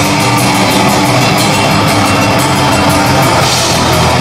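Black metal band playing live and loud: guitars over fast, even drumming on a drum kit.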